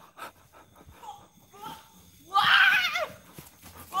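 A high, wavering vocal cry lasting under a second, starting a little past halfway, after a stretch of faint sounds.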